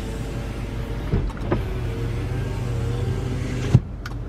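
2008 Buick Lucerne's front passenger power window motor running steadily as the glass travels in its track. It stops with a sharp thunk near the end.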